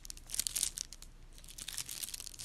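Plastic shrink wrap around a bar of handmade soap crinkling as the bar is turned in the hands, in short crackly bursts about half a second in and again near the end.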